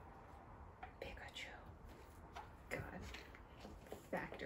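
Quiet room with faint whispered speech and a few soft handling sounds.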